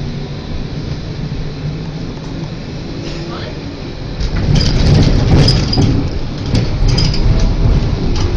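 Tram interior: a low steady hum while the tram stands, then about four seconds in the tram pulls away. The wheels rumble on the rails, louder, with clattering clicks and a few brief high squeals.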